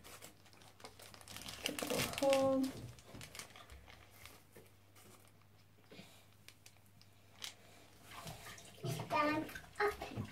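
Crinkling and rustling of a plastic ostomy bag and its adhesive backing being handled and pressed into place, loudest about two seconds in, over faint splashing of bath water.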